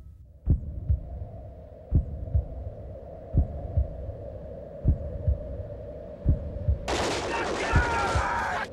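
A heartbeat-like double thump repeats about every second and a half over a steady low hum, as the intro to a metal track. Near the end a harsh, noisy layer comes in.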